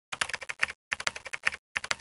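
Computer keyboard typing: quick key clicks in three short runs separated by brief pauses.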